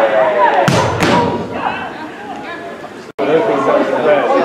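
Voices of players and spectators calling out at a football match, with two hard thuds close together under a second in, the ball being struck. The sound drops out for an instant near the end, then the voices return.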